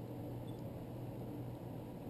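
A steady low hum with a faint hiss behind it, unchanging throughout.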